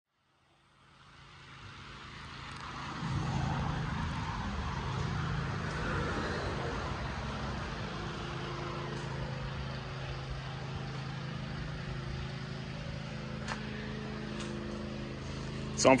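Honda K-series four-cylinder engine, swapped into a Civic, running at a steady idle; the sound fades in over the first few seconds.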